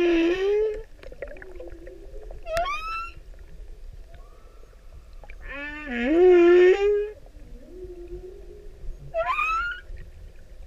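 Male humpback whale singing: a repeated phrase of a long wavering moan rich in overtones, a lower hum, and a quick upswept whoop, heard twice. This is a male's courtship song.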